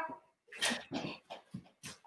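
A child giggling, heard over a video-call connection that chops it into short, clipped bursts with dead silence between, with a quick "hi" among them.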